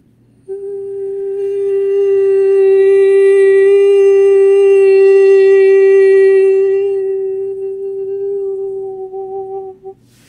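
A woman's voice holding one long, steady hummed or toned note as part of a light-language session, starting about half a second in, swelling to its loudest in the middle, then fading and breaking off just before ten seconds.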